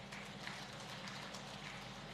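Faint hall room tone picked up by the podium microphones, with a steady low hum and a few soft clicks.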